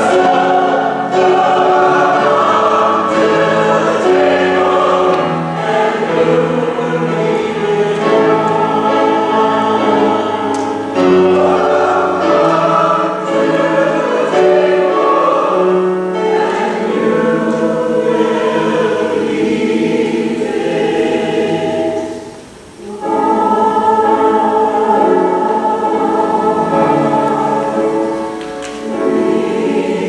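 Mixed church choir singing with piano accompaniment, the voices holding long chords; the sound breaks off for about a second roughly two-thirds of the way through, then resumes.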